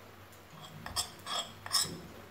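A steel spoon scraping and clinking against a ceramic bowl of dry gram flour and ground spices, three short scrapes about a second in and near the end.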